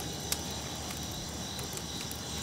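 Crickets chirring steadily in the night air, with one faint click about a third of a second in.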